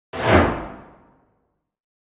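Animated logo intro sound effect: a single swoosh with a deep low end that starts sharply and fades away within about a second.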